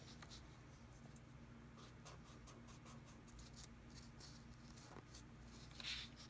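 Felt-tip marker drawing on paper resting on a laptop: faint, short scratchy strokes and taps of the tip, with a louder stroke near the end.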